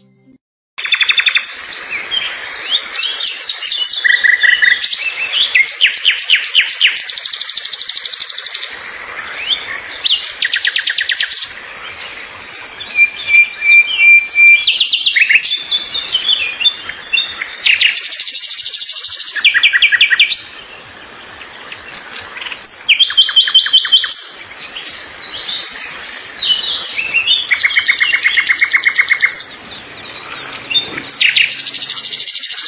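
Birds singing and chirping loudly: many rapid trills and repeated chirps overlapping almost without pause, starting about a second in, with one quieter lull about two-thirds of the way through.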